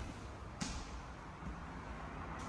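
Footsteps on a hardwood floor over a steady low rumble, with one sharp click about half a second in.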